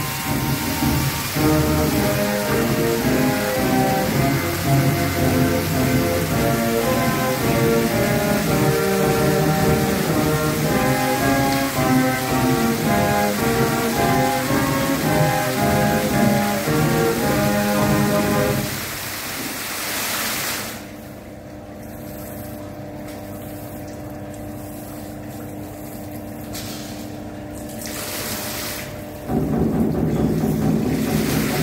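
Fountain show music with the hiss of water jets spraying over it. About two-thirds of the way through, the music stops and most of the spray hiss falls away, leaving a quieter steady hum. Near the end the music and spray come back loud.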